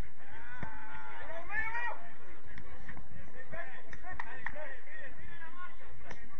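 Footballers' shouted calls across the pitch, rising and falling, in two stretches, with a few sharp knocks in between.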